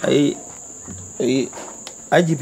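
Crickets chirring in one steady, unbroken high-pitched drone, with two short bits of a man's voice over it.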